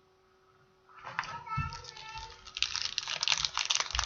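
A toddler's high-pitched squealing and shrieking, starting about a second in and growing louder and harsher near the end.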